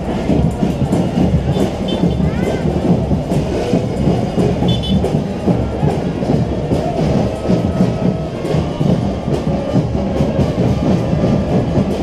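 School fanfare band's drums playing a steady, dense marching beat, with a crowd's voices mixed in.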